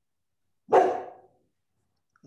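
A dog barks once, a single sharp bark about two-thirds of a second in that fades within about half a second.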